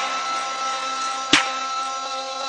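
Hip-hop backing track in a stripped-down break, with no rapping and no bass: a held chord with one sharp clap-like hit partway through.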